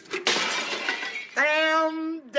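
A sudden crash like shattering glass, a quarter second in and lasting about a second, then a held sung note from a song.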